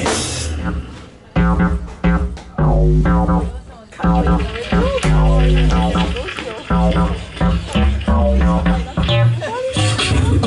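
Live band music: electric bass, guitar and drum kit playing a stop-start groove, with short breaks about one second in and again near four seconds in.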